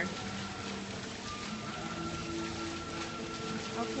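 Small fountain jets splashing into a shallow tiled pool, a steady hiss of falling water, under soft background music with long held notes.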